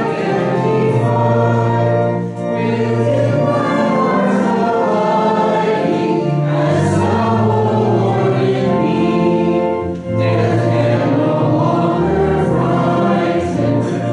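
Congregation singing a hymn in long held phrases, with brief breaks about two seconds in and again about ten seconds in.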